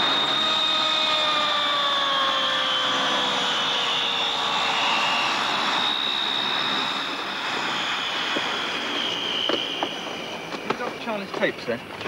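Propeller airliner's engines running as it taxis past, loud and steady with a high whine and a lower engine note that both slide slowly down in pitch. The sound eases off from about two-thirds of the way through as the aircraft moves away.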